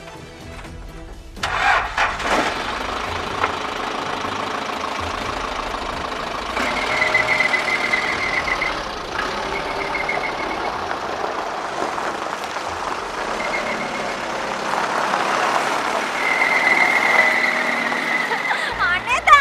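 A jeep's engine starting about a second and a half in, then running steadily as the vehicle drives off, with background music.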